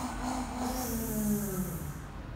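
A person's voice holding one long, slowly falling buzzing sound with a hiss over it, sounding out a letter's sound during an alphabet drill.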